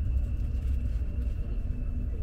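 Steady low rumble of an Alfa Pendular tilting electric train running along the track, heard from inside the passenger cabin, with a faint steady high whine over it.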